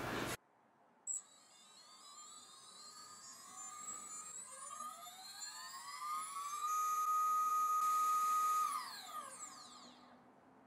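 RCX NK2204-2950KV brushless motor spinning without a propeller on a thrust stand during a KV measurement. Its whine rises steadily in pitch as the throttle ramps up, holds level at full throttle for about two seconds, then falls away as the motor spins down near the end. A brief tick comes just after a second in.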